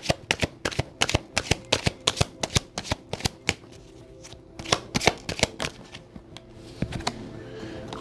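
A tarot deck being shuffled by hand: a quick run of card clicks and riffles for about four seconds, then fewer, scattered clicks, with faint background music underneath.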